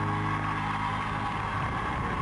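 Live band's final chord held and ringing out, with one long high note sustained above it, while the audience's cheering and applause rise toward the end.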